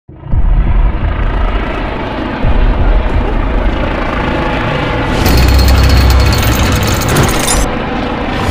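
Cinematic intro soundtrack for a mechanical logo reveal: music with deep booming hits, one just after the start and another about two and a half seconds in. From about five seconds in until shortly before the end, a loud, rapid mechanical rattling effect runs over a heavy low rumble.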